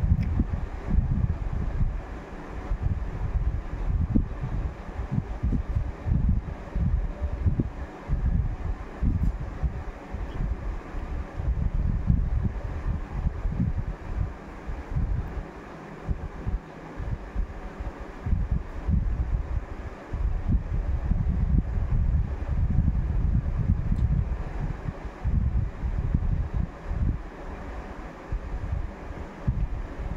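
Low, gusty rumble of moving air buffeting the microphone, swelling and fading irregularly.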